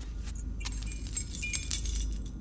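A bunch of keys jangling: light metallic clinks that grow thicker and brighter about halfway in, over a steady low hum.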